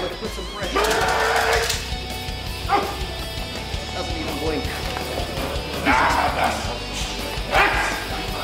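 Belgian Malinois barking in short bursts, a few times, while jumping at a decoy during bite work, over background music.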